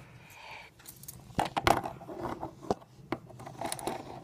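Metal handcuffs clinking on the wearer's wrists as the hands move, with several sharp clicks spaced through the few seconds over light handling rustle.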